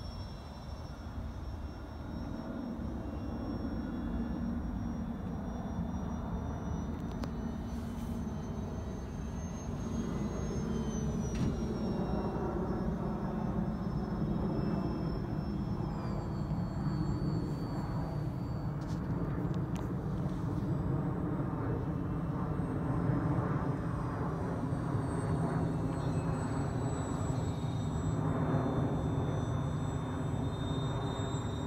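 Radio-controlled OV-10 Bronco model airplane flying overhead. Its twin propellers give a steady drone with a thin high whine that slides slowly up and down in pitch as it passes, growing a little louder partway through.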